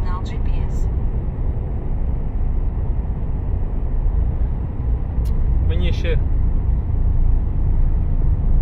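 Steady low rumble of engine and tyre noise heard from inside a moving vehicle's cab, driving through a road tunnel.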